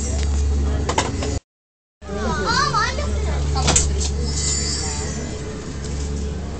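Steady low mechanical hum of room equipment, with a child's short wavering vocalisation about two and a half seconds in and a few sharp clicks. The sound cuts out completely for about half a second a little after one second in.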